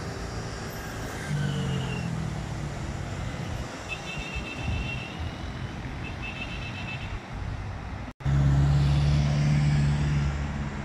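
Road traffic on a busy multi-lane road, a steady hiss of passing vehicles with one engine hum going by about a second in and faint high chirps twice in the middle. Just after a brief dropout near the end, a loud steady engine hum takes over, close by.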